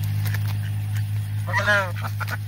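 Pekin ducks feeding on lettuce, one giving a single short quack about one and a half seconds in, over a steady low hum.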